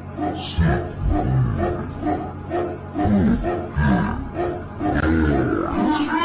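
Background music: an electronic track with a fast, evenly repeating short-note melody over deep bass notes that slide down in pitch, with a growling, distorted edge.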